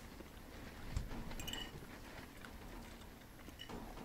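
Faint sounds of a man eating from a plate with a fork: quiet chewing and light cutlery clicks. There is a soft knock about a second in, followed shortly by a brief clink.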